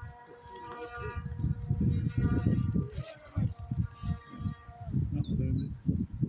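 A small songbird chirping a quick run of short, high, falling notes, about two a second, starting a little past halfway, over muffled voices.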